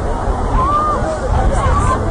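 Babble of many overlapping voices over a steady low rumble, with a couple of raised voices standing out above it, once about half a second in and again near the end.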